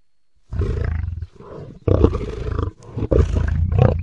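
Custom-made Tyrannosaurus rex roar sound effect: a deep roar starting about half a second in, swelling in three loud surges with a quieter stretch after the first, and cutting off sharply at the end.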